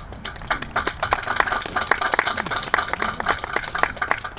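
Audience applauding, a dense run of many hand claps.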